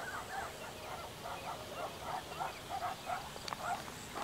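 An animal calling, a quick, even series of short arched notes at about three a second.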